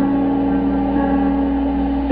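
Trumpet holding one long, steady note over a backing track.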